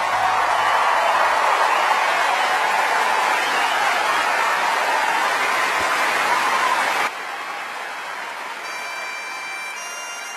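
Concert audience applauding as the band's final chord dies away in the first second or two. The applause cuts off abruptly about seven seconds in, leaving quieter crowd noise with faint steady pipe tones coming in near the end.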